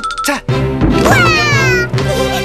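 Cartoon background music, over which a long, voice-like cry slides downward in pitch through the second half.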